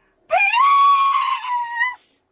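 A woman's loud, high-pitched scream, one held cry that rises at the start and lasts about a second and a half.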